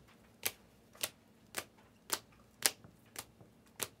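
A stack of plastic-sleeved trading cards being flipped through one at a time, a sharp click each time a card is slid off the stack, seven in all at about two a second.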